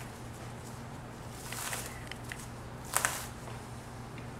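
Gloved hands pulling raw beef chuck short ribs back from the bone, giving a faint soft swish about one and a half seconds in and a short sharp sound about three seconds in, over a steady low room hum.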